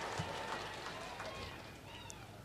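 A pause in an amplified speech: the voice's echo from the loudspeakers fades into faint outdoor background, with faint distant voices.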